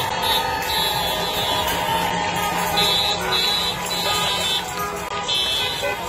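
Noisy street celebration: cars passing with horns honking amid a cheering crowd, with repeated shrill high-pitched blasts coming and going.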